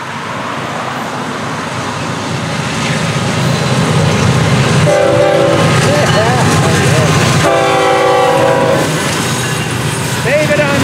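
Florida East Coast GE GEVO-engined locomotive 818 and a second diesel unit passing at close range, engine and rolling noise getting louder as they come by. The locomotive horn sounds twice, a shorter blast about halfway through and a longer one shortly after.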